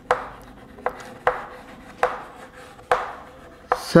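Chalk writing on a blackboard: a run of sharp taps, each followed by a short scratch, as the chalk strikes and drags across the board forming letters.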